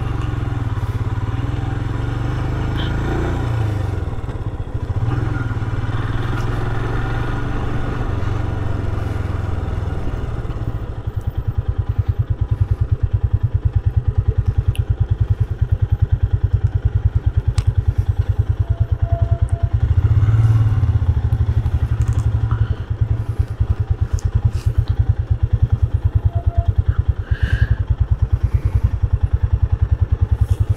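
Motorcycle engine rolling in at low speed for the first ten seconds or so, then idling with a fast, even beat; a few light clicks and clatters over it.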